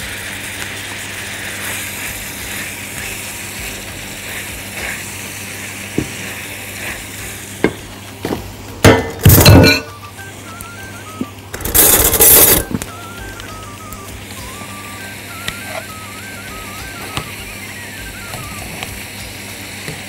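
Chicken pieces and chopped onion sizzling steadily in a frying pan, with two louder bursts of sizzling and scraping around the middle as the mixture is stirred with a wooden spatula. Faint background music underneath.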